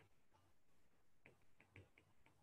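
Faint, quick clicks of a stylus tip tapping a tablet's glass screen while handwriting, several in a row in the second half.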